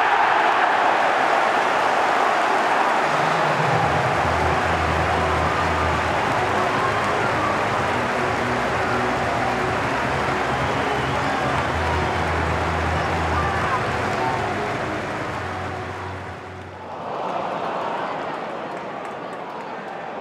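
Stadium crowd roaring in celebration as a goal goes in from a corner, the noise staying loud with a low, steady droning note underneath for much of it, then dipping briefly and swelling again near the end.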